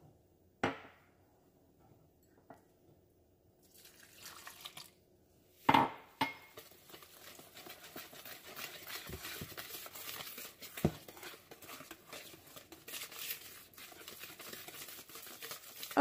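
Wire whisk mixing cornbread batter in a plastic mixing bowl: a couple of sharp knocks, the loudest about six seconds in, then steady quick clicking and scraping as the wet and dry ingredients are stirred together.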